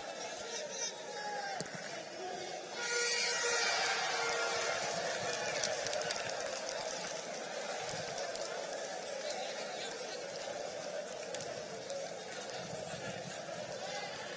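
Football stadium ambience: a small crowd's steady background noise with distant shouts from players and spectators, one louder shout about three seconds in.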